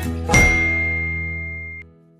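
Background music with a bell-like ding about a third of a second in. The ding rings on over the held final chord, and both fade and cut off shortly before the end.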